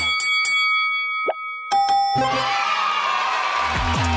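Game-show sound effects as the dance music cuts off: a cluster of ringing chime tones, a quick downward boing about a second in, and another chime. About two seconds in comes a swelling sting, and the beat and bass of the dance track return near the end. The cue marks a point scored, as the team's score goes from 3 to 4.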